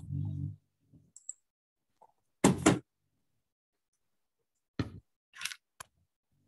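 A few sudden knocks or thumps, the loudest a quick double knock about two and a half seconds in, and three shorter ones near the end, with a brief low hum at the start.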